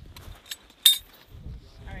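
Metallic clicks and one sharp, ringing clink a little under a second in, from a machine gun and its linked ammunition being handled at the firing position.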